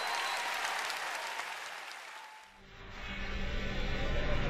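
Large audience applauding, the clapping fading out about two and a half seconds in. A low steady tone then comes in.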